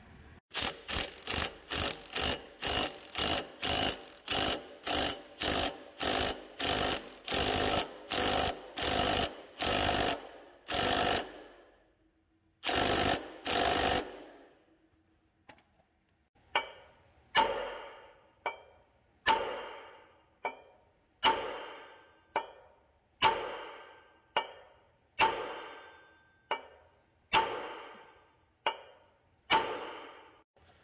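Impact wrench driving the forcing screw of a three-arm puller on the crankshaft pulley of a 1936 Caterpillar RD-4, in rapid short bursts about two a second. After a pause comes a slower run of sharp metallic hits about one a second, each ringing out. The small puller does not have enough in it to pull the pulley off its tapered seat.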